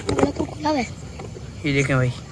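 People's voices speaking briefly, with a louder voice near the end, over faint outdoor background noise.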